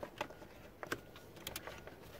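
Faint clicks and taps of plastic dashboard trim being handled as the cover above the steering column is worked loose, about five small clicks spread across the two seconds.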